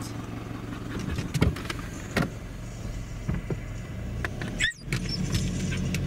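Car engine running, heard from inside the cabin, with a few sharp clicks and knocks in the first half. After a brief break about three-quarters of the way through, the engine hum runs steadier as the car drives on.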